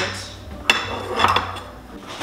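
Kitchenware clinking as a filled plate and a serving spatula knock against a glass baking dish and the countertop: two sharp knocks with a brief ring, about two-thirds of a second in and again a little after one second.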